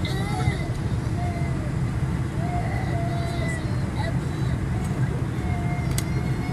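Steady low rumble of an airliner cabin while the jet taxis on its engines, with faint voices of people talking in the cabin.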